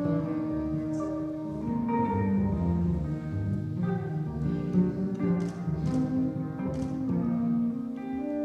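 A saxophone, double bass and guitar trio performing live: a bass line moving in the low register under held pitched notes.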